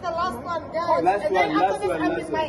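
People talking close by, several voices overlapping in chatter.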